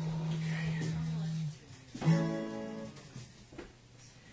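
Acoustic guitar in a pause between songs: a steady low tone is held and cut off about a second and a half in. About two seconds in a single plucked note rings out and fades, the kind of check a player makes while tuning.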